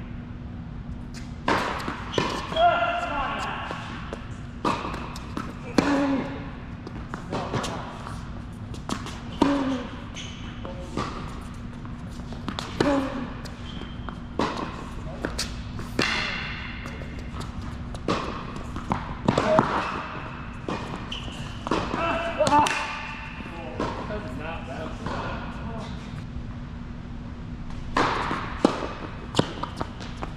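A tennis rally on an indoor hard court: racket strikes and ball bounces about a second apart, echoing in the hall, with short squealing tones among the hits. The hits stop for a few seconds and resume near the end, over a steady low hum.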